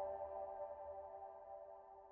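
A soft piano chord held with the sustain, its notes fading slowly, with no new note struck.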